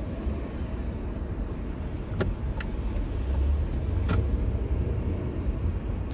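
Steady low rumble of a car's engine and road noise heard from inside the cabin while creeping in heavy traffic. Two sharp clicks stand out, about two seconds and four seconds in.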